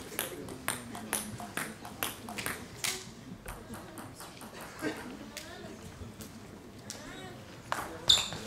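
Table tennis ball bounced repeatedly on the table by the server before serving, a run of light, sharp ticks about two a second, thinning out later.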